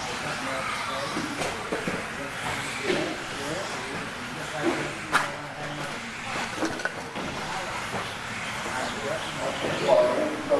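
Indistinct voices over the whir of electric 2wd RC buggies with 17.5-turn brushless motors running on an indoor dirt track. There is a sharp click about five seconds in.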